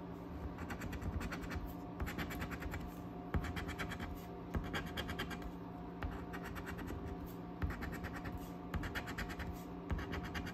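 A coin scratching the coating off a scratch-off lottery ticket, in short runs of rapid strokes with brief pauses between them.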